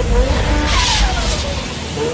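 Motorcycle engine note falling in pitch as a bike slows into a hairpin bend, with a short hiss near the middle, over bass-heavy electronic music that fades out near the end.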